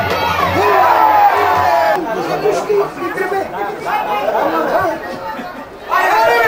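Crowd of spectators, many voices talking and calling out over one another. The voices drop away briefly near the end.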